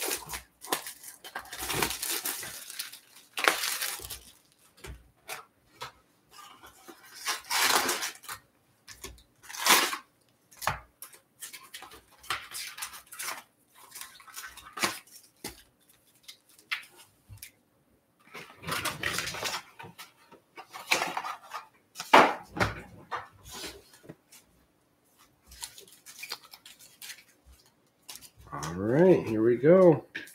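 Hands handling a trading-card hobby box and its foil card packs: the box's plastic shrink wrap crinkles, then packs are pulled out and stacked. The sound is a string of irregular crinkles, rustles and light taps with short pauses between them. A brief voice sounds near the end.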